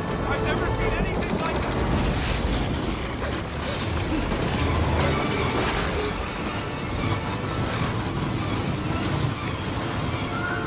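A film sound mix of a tornado: a steady, loud roar of wind with a deep rumble, and dramatic film music under it.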